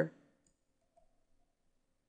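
The tail of a spoken word, then near silence with a few faint, soft clicks about a second in.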